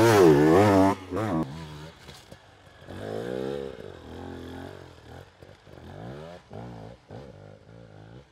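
Off-road enduro motorcycle engine revving hard with a wavering pitch. About three seconds in comes one long rev that rises and falls, followed by a string of short throttle blips.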